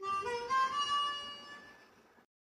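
A short Western-style harmonica phrase: a few notes climbing, then a held note that fades away.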